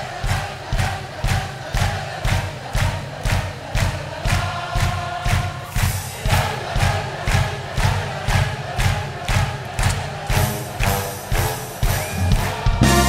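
A large crowd and orchestra clapping along in time, about two claps a second, over music with a steady bass-drum beat and crowd voices singing along.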